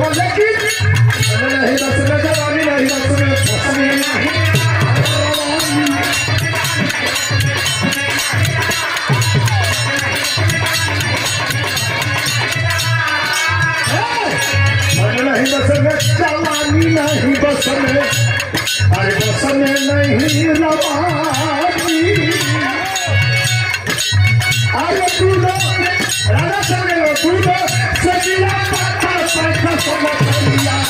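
A man singing birha, a Bhojpuri folk song, into a microphone, his voice sliding between held notes. A steady drum beat and clinking percussion keep time behind him.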